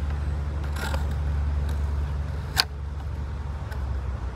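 A steady low mechanical rumble, like a running engine, with a single sharp click about two and a half seconds in.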